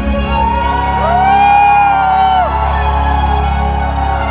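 Electronic dance music played live over a large concert sound system, with a steady sustained bass. A long rising-and-falling whoop from the crowd rises over it from about one second in.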